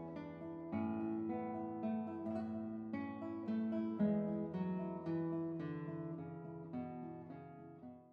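A classical guitar plays a melody of plucked notes that ring on into each other at an even, moderate pace, sinking in level toward the end.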